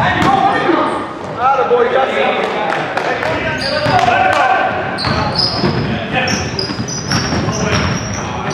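Indoor basketball game on a hardwood gym floor: the ball bouncing as it is dribbled, players' voices calling out, and short high sneaker squeaks in the second half, all echoing in a large hall.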